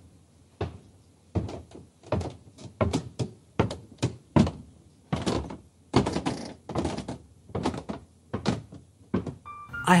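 Footsteps as a sound effect: a steady walk of separate soft thuds, about two or three a second, heading to a door.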